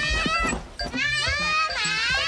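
A young girl shouting in a high-pitched voice: two long drawn-out cries, the first ending about half a second in and the second starting about a second in, with pitch bending up and down.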